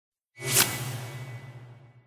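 Whoosh sound effect of an animated logo reveal, rising fast and peaking about half a second in, then fading out with a low hum and a thin high tone over about a second and a half.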